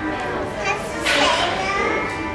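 A small child's voice calls out loudly about a second in, its pitch falling, over the babble of children in a large indoor hall.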